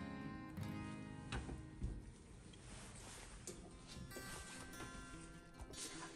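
Quiet background music of plucked guitar notes.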